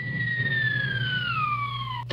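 A comic falling-whistle sound effect, one long whistle sliding steadily down in pitch, over a steady low hum from a running electric box fan.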